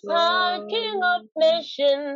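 A single high voice singing unaccompanied in short held phrases, with a brief break about a second and a quarter in.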